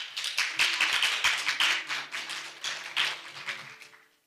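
Audience applause, many hands clapping, fading away toward the end. From about a second in, faint steady low tones of music sound under it.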